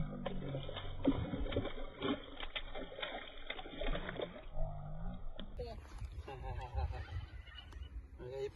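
Hooked trout thrashing at the surface beside the bank, a quick run of splashes through the first four seconds or so, then settling as it is lifted on the line.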